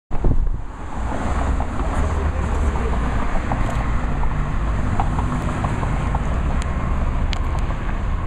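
Steady wind rumble on the microphone over a haze of outdoor traffic noise, with a few handling knocks at the very start.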